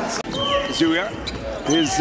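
A basketball being dribbled on a hardwood arena court.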